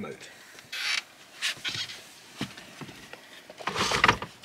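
Soft rustling and a few light knocks as a person shifts on a cushioned bench and reaches down to the white wooden slatted pull-out frame beneath it, with a louder scraping rustle near the end as he takes hold of the frame.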